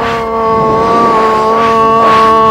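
A loud electronic chord held steady on several tones, with rushing whoosh swells rising and falling over it: a dramatised superhero flying sound effect.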